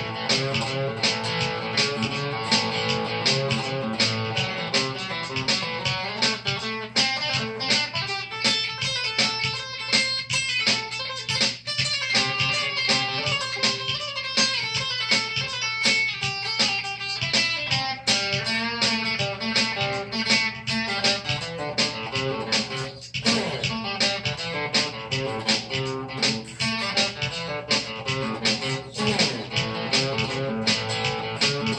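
Solid-body electric guitar playing a rockabilly-style instrumental break, with a busy run of quickly picked notes and strums.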